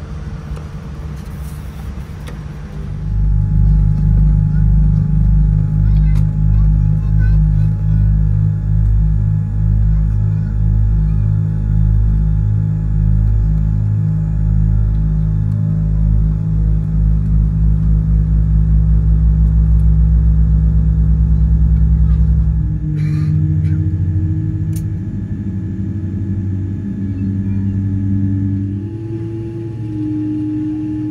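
Boeing 787 airliner cabin noise heard from a window seat with the aircraft's engines running: a loud low throbbing rumble with steady hum tones, pulsing in a slow beat that quickens for a few seconds. About three-quarters through the rumble drops and settles into a different, higher hum.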